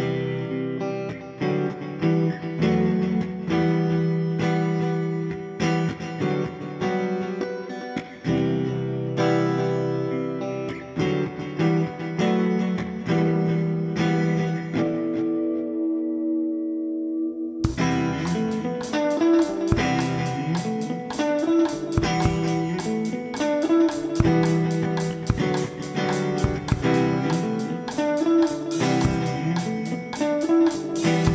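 Stratocaster-style electric guitar playing melodic lines on its own, ending on a held note that fades away. A little past halfway a full drum kit with cymbals comes in, and the guitar carries on over the beat.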